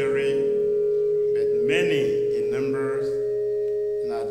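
A sustained instrumental chord held steady, one middle note much the loudest, with a man's voice speaking over it in short phrases.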